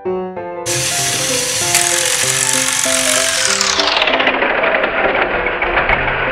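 Motors and gears of battery-powered Thomas & Friends toy engines switching on and whirring with a steady rattle as the engines push against each other on plastic track, starting suddenly under a second in. Piano background music plays along.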